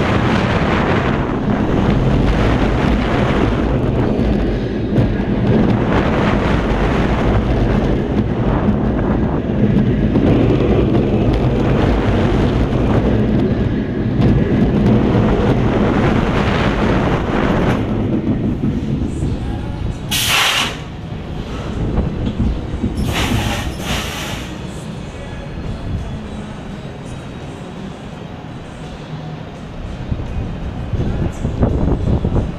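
Gerstlauer Infinity Coaster train running over its steel track, a loud rumble with wind rushing over the on-ride microphone. About 20 s in, and again about 3 s later, two sharp loud hisses come as the train slows on the brakes, and the rumble then drops to a quieter roll.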